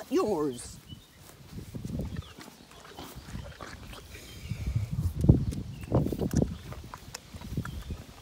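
A pony eating a carrot with its muzzle right at the microphone: a run of irregular low chewing and snuffling sounds, loudest in the middle.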